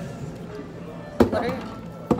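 A single sharp knock about a second in, the camera being set down on the metal tabletop, followed by a voice starting to speak, with faint background music throughout.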